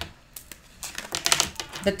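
A tarot card being drawn and laid down on a table: a quick run of light clicks and taps, thickest about a second in.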